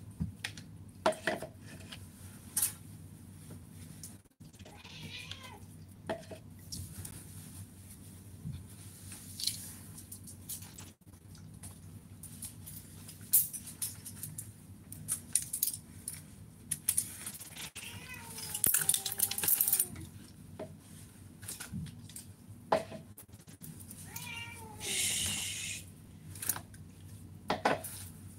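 A pet crying in three drawn-out, wavering calls that fall in pitch, about five seconds in, around nineteen seconds and near twenty-five seconds, among scattered sharp clicks and clinks of handling.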